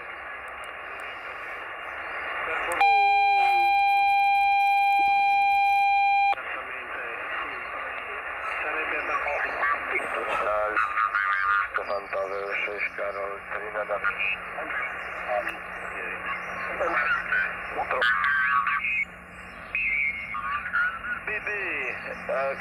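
Xiegu X6100 transceiver's speaker receiving the busy 40 m band: hiss and garbled single-sideband voices sliding in and out of tune as the dial is turned. A loud steady tone sounds for about three seconds near the start, and a low hum comes in about halfway through.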